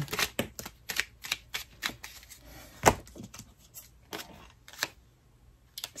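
Deck of tarot cards shuffled overhand by hand: an irregular run of sharp card clicks and slaps, about three or four a second, the loudest about three seconds in, stopping about five seconds in.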